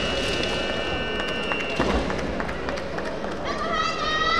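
Kendo kiai: a long, high shout held at a steady pitch until about two seconds in, then a second shout rising in pitch near the end. Light taps and footfalls on the wooden floor sound between them.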